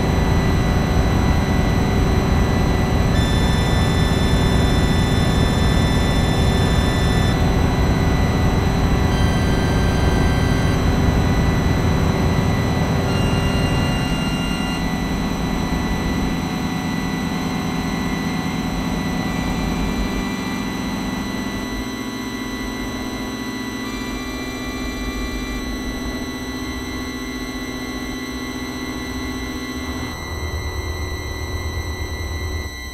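Layered electronic drone soundscape: a dense low rumble with steady high tones of different pitches entering and dropping out. The low rumble thins out about halfway through, leaving a quieter, sparser drone.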